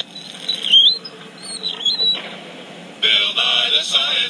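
High-pitched wavering squeaks, heard through a tablet's small speaker, then about three seconds in the show's title music starts.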